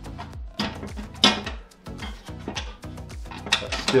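Background music with a steady beat, over a few metallic clanks and rattles of a Weber Baby Q grill lid being lowered and closed onto the poultry infusion roaster, the loudest clank about a second in.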